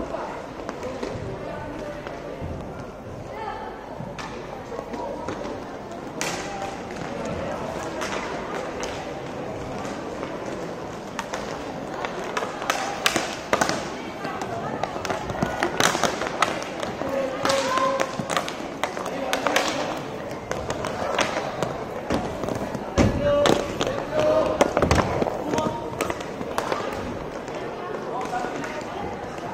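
Inline hockey play: sharp clacks of sticks and the puck hitting sticks and boards, coming often and loudest in the second half, over a steady background of spectators' and players' voices.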